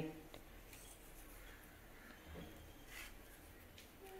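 Near silence, with a few faint light clicks and rubs of salt being pinched from a small plastic bowl and sprinkled over dry ragi vermicelli on a plate.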